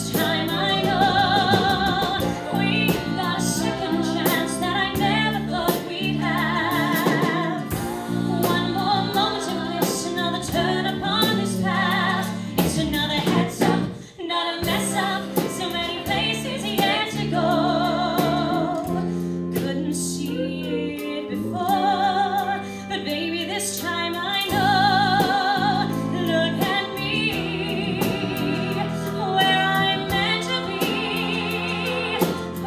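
Music: a woman singing long held notes with vibrato over band accompaniment, with a brief drop in the sound about fourteen seconds in.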